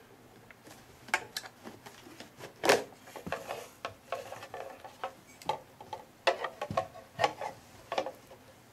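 Plastic chassis halves of a Ludlum Model 9DP ion chamber meter being pulled apart by hand: irregular clicks, knocks and rubbing scrapes, the loudest a knock about three seconds in.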